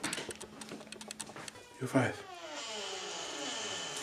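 Handheld camera gimbal making mechanical noise because its battery is dead: a run of clicks and rattles, then a falling whine about two seconds in that settles into a steady high-pitched whine.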